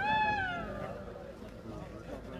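A single high-pitched shout that rises briefly and then falls, lasting about a second, over a background murmur of voices.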